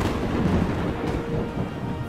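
Thunder sound effect: a long rolling rumble with a steady hiss, over a faint held music note.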